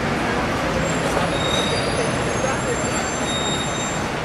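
Busy city street noise: steady traffic and the voices of passers-by, with thin high squealing tones coming and going through the middle, such as vehicle brakes make.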